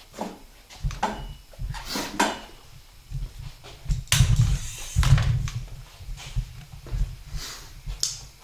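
Scattered knocks and clunks with low rumbling handling noise from a handheld camera being carried through a garage, loudest about four to five seconds in.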